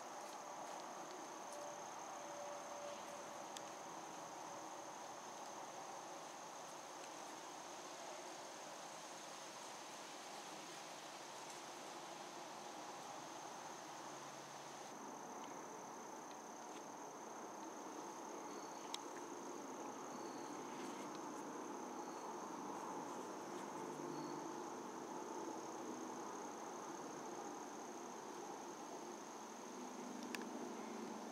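Steady chorus of crickets: one unbroken high-pitched trill.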